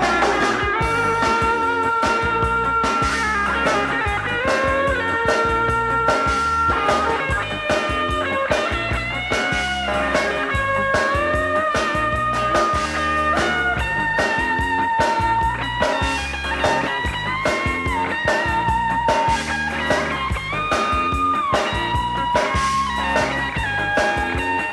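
Instrumental stretch of a band recording: drums and bass keep a steady beat while a lead line plays long held notes that slide and bend between pitches, with no singing.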